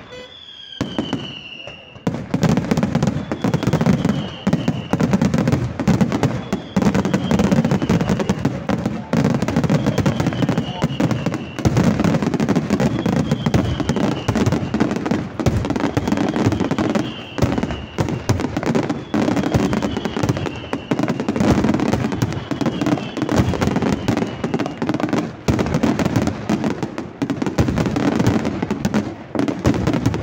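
Aerial fireworks display in a dense, continuous barrage of shell bursts and crackling, building up over the first two seconds. A short falling whistle recurs about every two seconds over the bangs.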